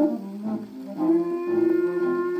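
A 78 rpm swing-era jazz record playing on a Victrola phonograph. A wind instrument holds one long steady note from about a second in.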